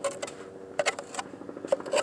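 Clam shovel blade scraping and chopping into wet mud in a digging hole: a string of short, irregular scrapes and clicks over a faint steady hum.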